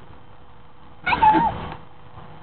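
A single short, wavering meow-like cry about a second in, lasting about half a second.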